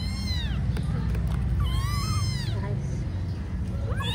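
Young kittens meowing: one meow at the start and another about two seconds in, each rising and then falling in pitch, with a third beginning right at the end. A steady low hum runs underneath.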